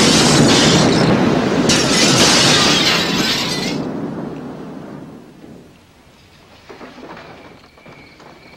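Aftermath of a blast at a brick building: debris and breaking glass clattering down over a heavy rumble, the crashing cutting off about four seconds in and the rumble dying away over the next two.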